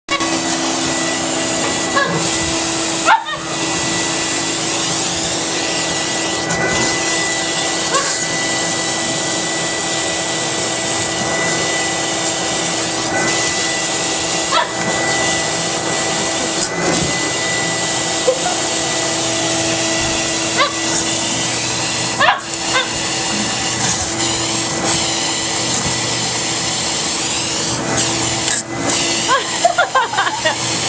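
Vacuum cleaner running steadily through its hose and wand, a constant rush of air with a high steady whine and a lower hum. The sound drops out briefly twice, about three seconds in and again a little after twenty seconds.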